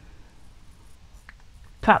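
A quiet pause with only low room tone and a faint tick about a second in, then a voice starts speaking near the end.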